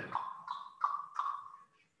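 Four short pings at about the same pitch, each starting sharply and ringing out briefly, coming about three a second and dying away near the end.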